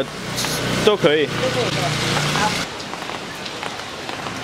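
Steady hiss of rain falling, with a few spoken words between about one and two and a half seconds in.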